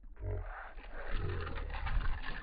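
Slowed-down, deep-pitched splashing and rumble of a largemouth bass striking and thrashing at the water's surface, with a run of sharp splash hits from about a second in.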